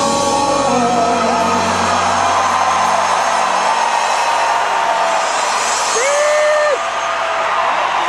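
Arena crowd cheering and applauding at the end of a live pop song, with the band's last sustained notes dying away in the first few seconds. A single loud whoop rises out of the crowd about six seconds in.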